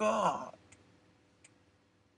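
A man says one short word, then a quiet stretch with two faint, sharp clicks about three-quarters of a second apart.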